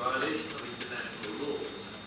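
Indistinct voices talking in a large council chamber, with a few brief clicks.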